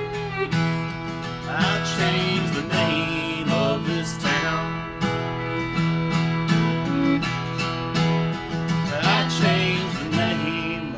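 Acoustic guitar strummed with a fiddle bowing a melody over it: an instrumental passage of a country-folk song.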